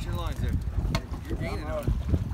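Wind buffeting the microphone as a low, continuous rumble, with people talking over it.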